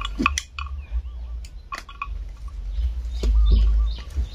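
Small birds chirping in short, repeated high calls over a steady low rumble that swells near the end, with a few sharp clicks.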